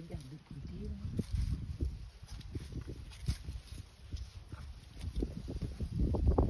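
An African elephant feeding and walking through dry scrub at close range: dry twigs and stems crack and snap at irregular intervals as it breaks off browse and steps through the brush.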